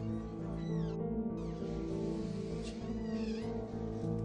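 Background music with sustained chords, over which a cat meows twice in short falling calls, about half a second in and again about three seconds in.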